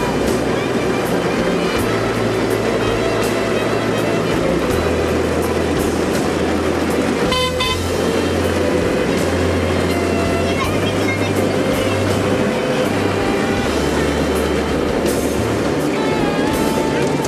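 A short, high horn toot about halfway through, from a ride-on miniature railway train, over steady background music and the rolling noise of the train.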